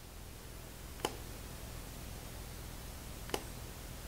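Phottix Mitros speedlight fired twice at half power: two short sharp clicks a little over two seconds apart, the gap being the flash's recycle time, over faint room tone.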